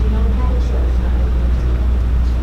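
A steady low hum runs underneath, with faint, indistinct voices of people talking quietly.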